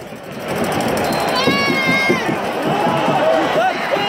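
A large football stadium crowd yelling and cheering, building up about half a second in, with individual fans' shouts standing out; one fan holds a long, high shout about a second and a half in.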